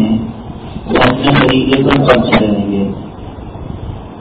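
A man's voice lecturing, one spoken phrase of about a second and a half starting about a second in, with pauses either side, over a steady low rumble.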